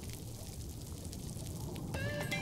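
Faint, steady underwater ambience: a low watery rush with a light crackle above it.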